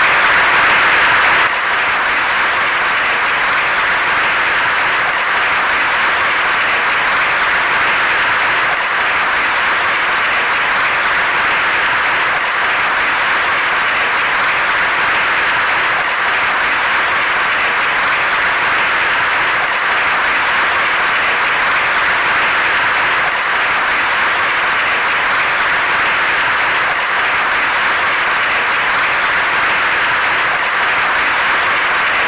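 Sustained applause from a large audience, many hands clapping steadily, dipping slightly in level about a second and a half in.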